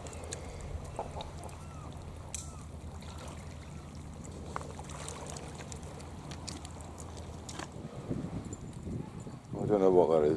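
Steady low engine drone that stops about eight seconds in, with scattered faint clicks over it.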